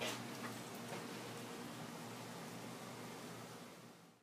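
Faint steady background hiss with a low hum, a sharp click at the start and a few lighter clicks of camera handling, fading out near the end.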